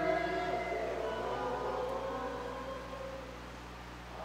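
Congregation singing a hymn, holding a long note that fades away over about three seconds, with a steady low hum underneath.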